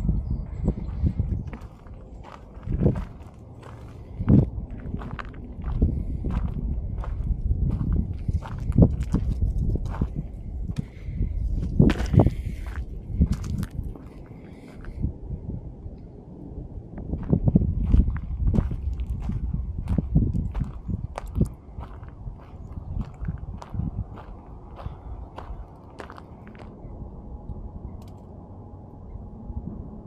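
Footsteps, scuffs and irregular knocks of a person climbing off a ladder and walking across a gravel-covered flat roof, over a low rumble, with a brief scraping hiss about midway. The sounds thin out near the end.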